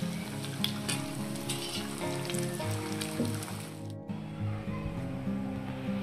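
Farali gota fritters deep-frying in hot oil, a crackling sizzle, under background music. About two-thirds of the way through, the sizzle cuts off abruptly and only the music goes on.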